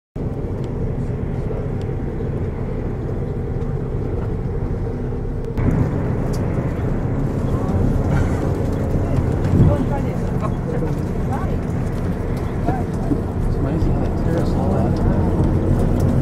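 Steady low rumble of engine and road noise heard inside a moving bus. It steps up in loudness about five and a half seconds in.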